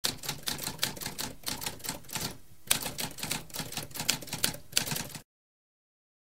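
Typewriter keys struck in quick succession, several clicks a second, with a short pause about halfway, stopping a little after five seconds in.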